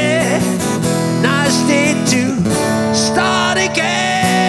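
Acoustic guitar playing a lead break, with bent, wavering notes over steady held chords, in a live acoustic rock arrangement.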